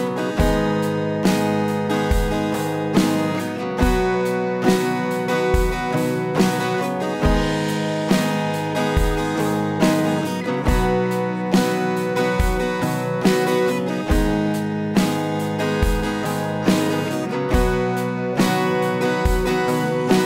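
Acoustic guitar strumming the intro chords, G# minor and B, in the key of B major, with a steady low thump on the beat.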